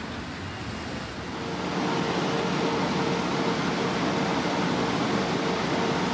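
Steady outdoor street noise of passing traffic; about a second and a half in, it grows louder as a steady mechanical hum with a low droning tone joins it.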